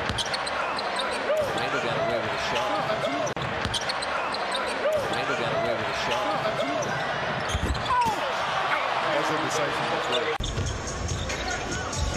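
Live basketball game sound: sneakers squeaking on the hardwood court and the ball bouncing, over a steady arena crowd din. The background changes abruptly near the end.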